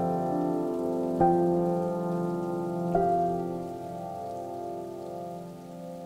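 Solo piano playing soft, sustained chords. New notes are struck about a second in and again about three seconds in, each ringing and dying away, and the sound grows quieter toward the end.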